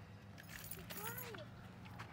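Faint voices and a light jangling, as of keys, over a steady low hum.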